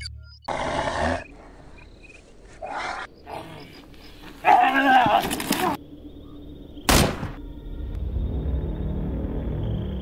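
Beast-like roars and growls from a fanged, wolf-like creature in three bursts, the longest and loudest near the middle, then a single sharp hit about seven seconds in, over a low music drone.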